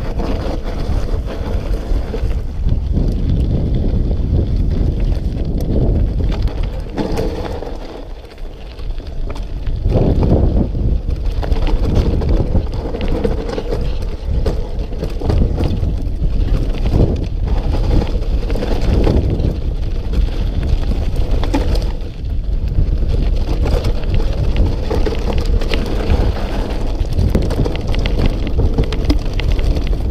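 Wind rushing over the camera microphone as a mountain bike descends a loose, rocky trail, with tyres crunching over gravel and the bike rattling and knocking over bumps. It briefly eases about eight seconds in.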